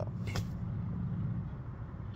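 Steady low hum inside a parked car's cabin, from its idling engine or ventilation, with one brief click about a third of a second in.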